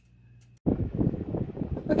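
After a brief near-silence, a spatula stirring and scraping thick meat sauce in a nonstick skillet starts abruptly about half a second in. A small tabletop fan runs underneath it as a steady noise.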